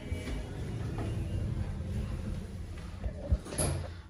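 Sliding doors of an Oakland Elevators passenger lift over a low, steady rumble. There is a sharp knock a little after three seconds in.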